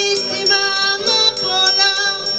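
Live music: a woman singing held, gliding notes over an acoustic guitar accompaniment.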